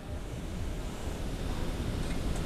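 Steady low rumbling background noise on a factory shop floor, with no distinct event in it, slowly growing a little louder.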